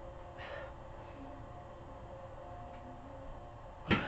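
A single sharp metal clunk of a dumbbell set down on the floor, just before the end, over a faint steady room hum.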